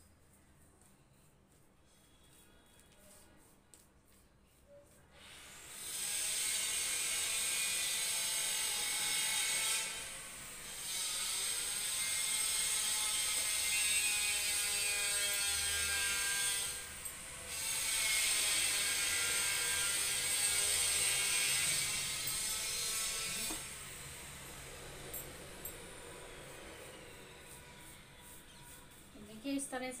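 A loud mechanical whirring starts about five seconds in, breaks off briefly twice, and drops to a lower level about two-thirds of the way through.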